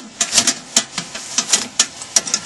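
Bolted steel channel legs of an ammo-can tent stove being swung on their pivot bolts and folded up under the steel can: a quick run of about half a dozen sharp metal clicks and clanks.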